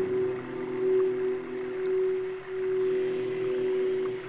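Crystal singing bowl ringing with one steady sustained tone and fainter overtones, its level swelling and easing slowly.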